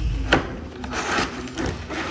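Cardboard packaging and plastic wrap rubbing and scraping as a ring light is handled and pulled from its box, with a sharp knock about a third of a second in.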